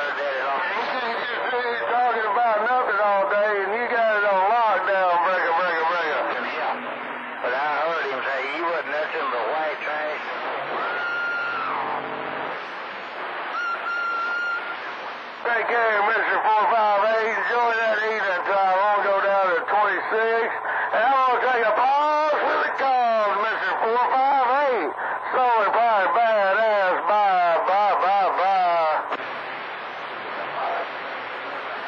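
Voices talking over a CB radio receiver on channel 28, long-distance skip transmissions coming in. Near the middle the talk drops out and a steady whistle tone sounds twice, about a second each time.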